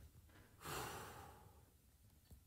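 A woman's heavy sigh: one breathy exhale starting about half a second in and fading away over about a second.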